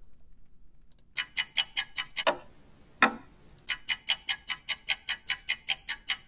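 Clock-tick loop from Logic Pro's Apple Loops library playing back: rapid, even ticks about five a second, starting about a second in. The ticks break off around two seconds, with two single louder clicks in the gap, and resume a little before four seconds.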